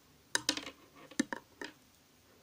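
Metal knitting needles clicking against each other as stitches are worked, about six sharp, slightly ringing clicks in quick succession.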